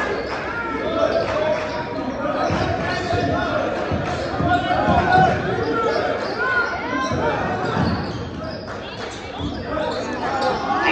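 Basketball game sounds in an echoing gym: the ball bouncing on the hardwood floor, sneakers squeaking, and players' and spectators' voices.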